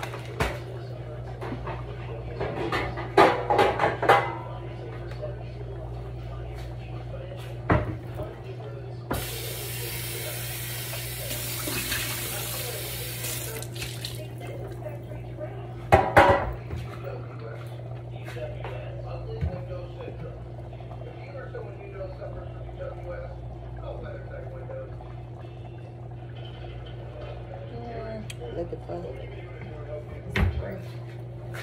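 Kitchen work: pans and dishes clattering a few times, and a tap running for about five seconds in the middle, over a steady low hum.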